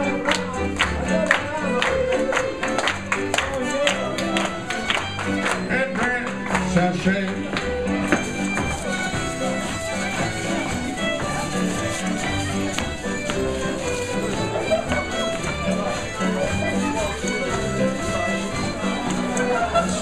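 Live contra dance band playing a fiddle tune with a steady beat: fiddles lead over keyboard and guitar backing.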